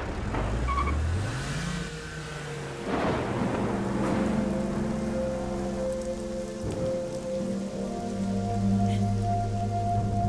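Heavy rain pouring down, with a rumble of thunder about three seconds in. From about four seconds in, held notes of background music sound over the rain.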